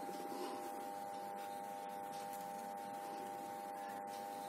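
A steady, faint hum made of several close, unchanging tones, with soft handling of paper pieces on a table beneath it.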